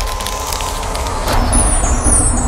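Logo-sting sound effects: a deep rumble with crackling clicks, building into a louder whooshing swell near the end.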